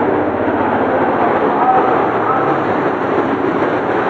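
Busy street-market din: a loud, steady mix of many distant voices and traffic noise, with no single sound standing out.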